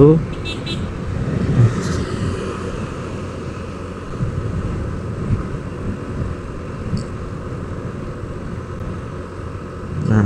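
Riding noise from a Honda Vario 125 scooter on the move: a steady low rumble of engine, tyres and wind.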